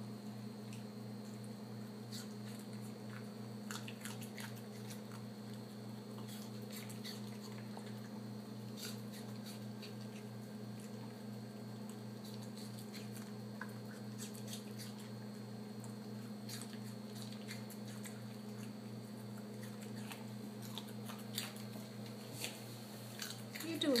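Yorkshire terrier chewing small pieces of raw carrot and apple, taking them one at a time from the cups of a plastic ice cube tray: scattered soft crunches and clicks, spaced out as she chews each piece slowly rather than gulping. A steady low hum runs underneath.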